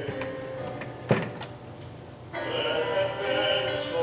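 A recorded Christian song about grace playing through a church's loudspeakers. The music thins out between phrases, a single knock sounds about a second in, and the song comes back in just past two seconds.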